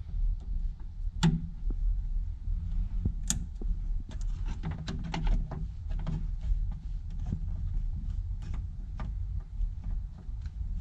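Hands handling a rubber fuel hose and its quick-disconnect fitting at the fuel pump opening: scattered light clicks, taps and rubs, the sharpest about one and three seconds in, over a low steady hum.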